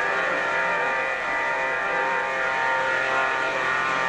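Harmonium holding steady reed notes, a sustained chord with no singing over it.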